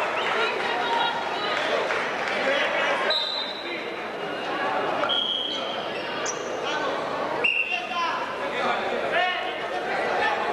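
Crowd chatter and calling voices echoing in a large gymnasium during a wrestling bout. Three brief high-pitched tones cut through, about three, five and seven and a half seconds in, with a short squeak between them.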